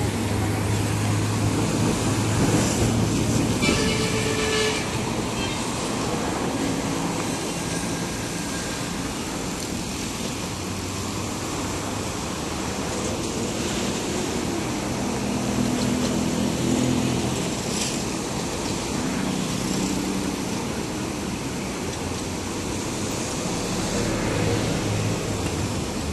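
Distant GE C39-8 diesel-electric locomotives running in a rail yard, a low engine hum whose pitch shifts up and down as they work, over a steady wash of city traffic noise.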